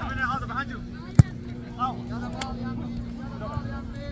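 A single sharp thud of a soccer ball being kicked, about a second in, over distant shouting voices and a steady low hum.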